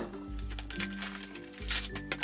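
Background music of soft sustained chords. Near the end come a few light clicks from a cardboard knife-set box and its plastic tray being handled.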